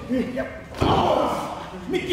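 A single loud slam about a second in: a blow or body impact landing in a pro-wrestling ring, with shouting voices around it.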